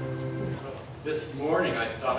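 A held organ chord that stops about half a second in, followed from about a second in by a man's voice.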